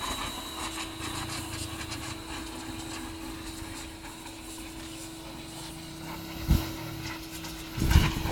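Huter W105-GS electric pressure washer running with a steady hum and hiss, with a single thump about six and a half seconds in.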